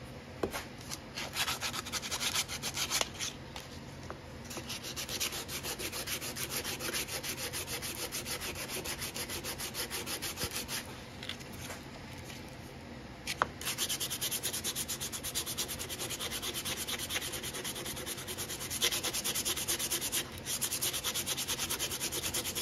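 Hand-sanding a carved mahogany knife handle with a folded piece of sandpaper: quick, even back-and-forth strokes, about three or four a second. There is a short pause a little past halfway, and then the strokes come back somewhat louder.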